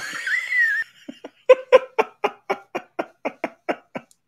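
A person laughing: a short high-pitched squeal, then a run of about a dozen short, evenly spaced bursts of laughter, about four a second.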